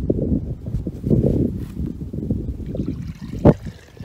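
Water sloshing and gurgling in a plastic bucket as a vase is pushed down into it at an angle and twisted, with one sharp knock about three and a half seconds in.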